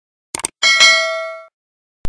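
A couple of quick clicks, then a bright bell-like ding that rings for about a second and fades away. It is the sound effect of a subscribe-button and notification-bell animation.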